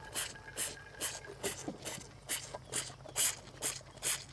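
A bull calf sucking on a bottle nipple: a steady rhythm of short slurping, hissing sucks, about three a second.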